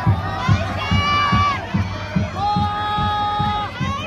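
Football supporters chanting in unison in long held notes over a steady drumbeat, about two beats a second, as the players come over to greet the fans.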